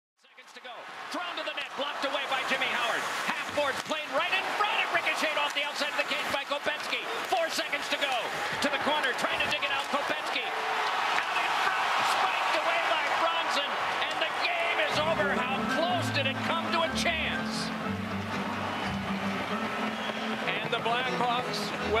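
Hockey arena crowd noise with many voices and frequent sharp knocks and cracks. It fades in from silence, and music with a deep bass line comes in about fifteen seconds in.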